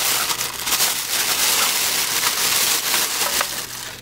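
Thin clear plastic packaging bag crinkling and rustling continuously as a small camera is worked out of it by hand, dying down near the end.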